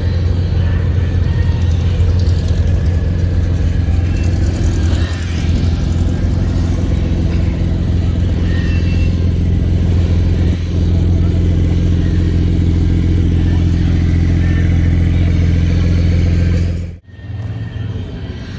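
A car engine running at a steady idle, one unchanging low hum that stops abruptly about a second before the end.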